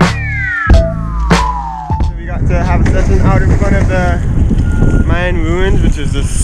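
Background music with drum hits and a long falling synth tone, which stops about two seconds in. Then wind buffets the action-camera microphone while a man's voice calls out in short, wavering cries without clear words.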